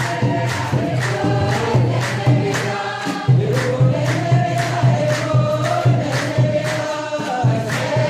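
Ethiopian Orthodox congregation singing together, with a kebero drum and hand-clapping keeping a steady beat of about two and a half strokes a second.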